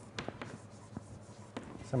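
Chalk writing on a blackboard: a string of short, sharp taps and strokes, irregularly spaced through the two seconds.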